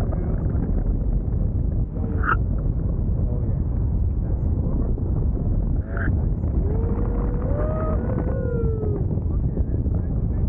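Wind rushing over the camera microphone in flight on a tandem paraglider: a steady, loud, low rush. A faint voice rises briefly within it about seven seconds in.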